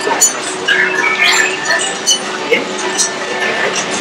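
Steady crowd chatter, with short electronic chirps and beeps from a remote-controlled R-series astromech droid, a cluster of them about a second in.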